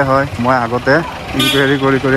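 A man talking, over a steady low vehicle engine hum, with a brief sharp sound about one and a half seconds in.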